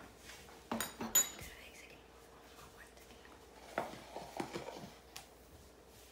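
Dishes and cutlery clinking as they are put away: a few sharp clinks about a second in and another cluster near four seconds. Under them, a faint steady hum from an electric milk frother heating milk.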